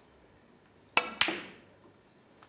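A snooker shot: a crisp click of the cue tip striking the cue ball, then, about a quarter of a second later, a sharper click of the cue ball striking a red, with a brief ring.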